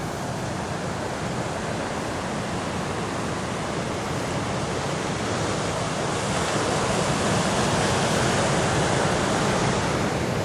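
Surf breaking and washing onto a shingle beach: a steady rush of waves that swells gradually louder in the second half.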